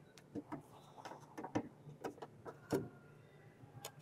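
Lid of a metal can being pried open with a screwdriver-like tool: faint, irregular metallic clicks and small knocks as the lid works loose, with a few sharper clicks in the second half.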